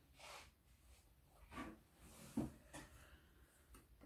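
Near silence broken by a few faint, short rustles and light knocks as something dropped is picked up off the floor.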